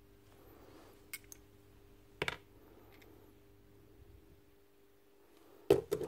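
A few short clicks of small metal parts being handled and set down: the planetary gears and pins from an impact wrench's gear head. Two light clicks come about a second in, a sharper one a little after two seconds, and another just before the end, over a faint steady hum.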